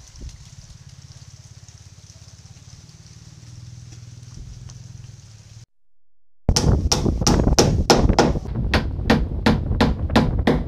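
A faint steady low hum at first. Then, after a brief cut to silence, loud, sharp strikes of a hand tool on the boat's wooden hull, about four a second.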